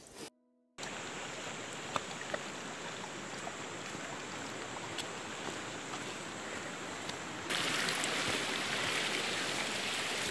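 Steady rush of running water from a small stream, with a few faint light knocks. The sound drops out briefly near the start and is louder from about three-quarters of the way in.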